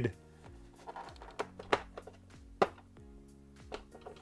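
A few sharp clicks and knocks of a hard plastic toy vehicle being handled, the loudest a little past halfway, over soft background music.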